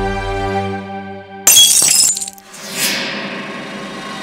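Dramatic background score holding sustained chords, broken about one and a half seconds in by a sudden, loud crash of shattering glass, the loudest thing here. A rushing swell follows as the music goes on.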